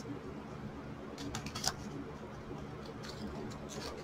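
Scissors snipping and handling noise from a wired fabric ribbon as it is cut: faint scattered clicks and rustles, a cluster about a second and a half in and more near the end.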